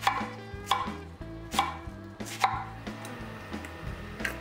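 Chef's knife cutting through a head of cabbage onto an end-grain wooden cutting board: four separate sharp cuts, spaced roughly a second apart.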